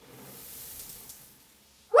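Soft whoosh of gas-filled soap foam igniting and burning off as a fireball, fading out after about a second and a half. A woman's shout of 'woohoo' begins right at the end.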